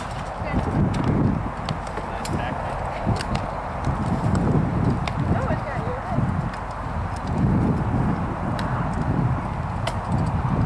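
Wind buffeting the microphone as a gusty low rumble, with scattered sharp clacks of rattan swords striking shields and armour.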